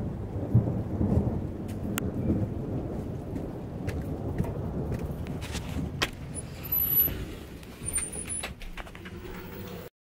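Low thunderstorm rumble and wind noise on a phone's microphone, uneven in loudness, with scattered sharp clicks and knocks from the phone being handled. The rumble eases in the last second or so.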